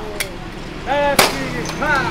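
Glass soda bottle being popped open at a street drinks cart: one loud, sharp pop about a second in, with a smaller click just before.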